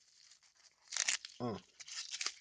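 Bubble wrap crinkling as a small taped package is handled, in a short burst about a second in and a few smaller crackles near the end.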